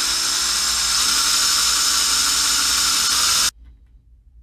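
Cordless drill with a small bit running steadily, boring a hole in a carved wooden lure to take a BB weight; the motor stops abruptly about three and a half seconds in.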